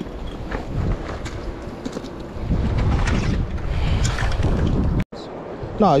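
Wind buffeting the microphone outdoors, a low rough rumble that grows louder about halfway through, then cuts off suddenly just before a man speaks.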